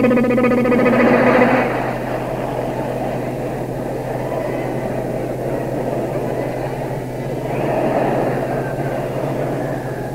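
A man's held sung note, then a long raspy, noisy mouth sound blown through slack lips, swelling near the end, on an old cassette recording with a steady low hum under it.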